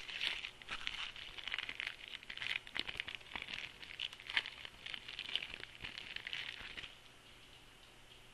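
Plastic wrapper of a 2010 Score trading-card rack pack crinkling and tearing as it is opened by hand, a dense run of crackles that stops about a second before the end.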